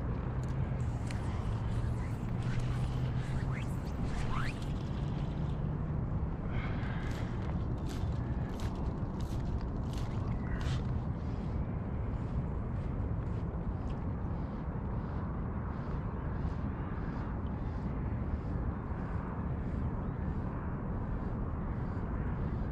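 Steady outdoor background noise with a low hum over the first few seconds and a run of short, faint clicks through the first half.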